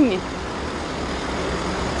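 Steady road traffic noise on a city street, an even rumble with no single event standing out.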